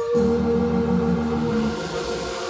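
Live band music on a held chord: sustained keyboard and electric guitar tones, with a lower group of notes coming in just after the start and dropping away near the end. No drum beat.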